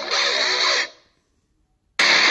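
Outro jingle music with a strummed electric guitar: a chord that stops just under a second in and dies away, then silence until the next chord hits at the very end.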